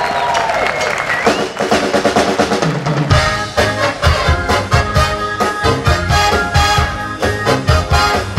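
Live beach-music band with a horn section starting a song: drum strokes and trumpets and trombone, then the bass and full drum kit come in about three seconds in with a steady beat.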